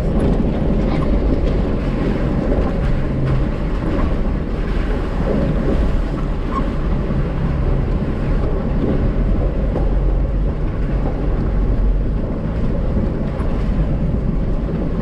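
Jeep engine running at low speed with its tyres rolling over a gravel track, heard from inside the cab as a steady low rumble.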